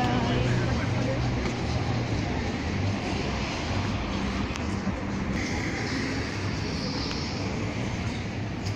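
Street traffic going by, with people's voices in the background and a low engine hum that fades after the first couple of seconds.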